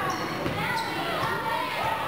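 A basketball dribbled on a hardwood gym floor in repeated bounces, with people's voices calling out in the hall.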